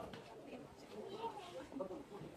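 Faint voices of passersby talking, with a pigeon cooing.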